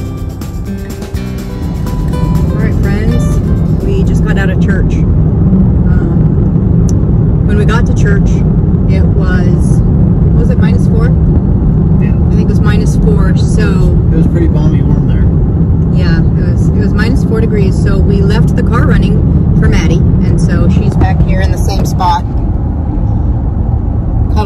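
Car cabin road noise while driving: a loud, steady low rumble of tyres and engine heard from inside, with scattered faint talk over it. Guitar music ends in the first second or two.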